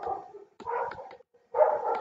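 A dog barking in the background: short barks in the first second or so, then a brief gap.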